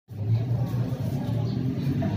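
Road traffic: a steady low engine rumble with street noise, before the saxophone comes in.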